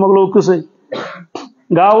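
A man's voice speaking into a microphone, breaking off about halfway through for a short, noisy throat-clearing, then speaking again near the end.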